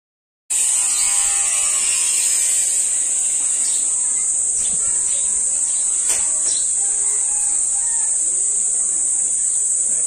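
A loud, steady, high-pitched insect drone starts abruptly half a second in and holds without a break, with faint bird chirps under it and a single click about six seconds in.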